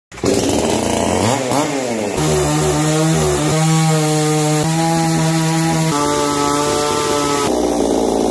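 Gas two-stroke chainsaw run up from its pull-start, revved up and down once, then held at high speed as it cuts through a wooden pole, the engine tone steady with a few small shifts in pitch.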